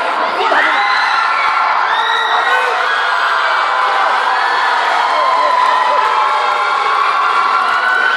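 Spectators in a large indoor hall cheering and shouting, many voices at once, the din holding steady.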